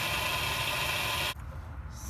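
Propane torch flame hissing steadily as it heats a seized exhaust bolt, cutting off suddenly about a second and a half in, leaving a faint low rumble.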